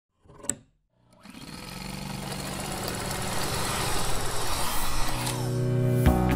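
Title intro sound effect: a short click about half a second in, then a rising swell of rushing noise over a steady low drone that grows louder for about four seconds. Near the end the noise falls away, leaving held musical tones.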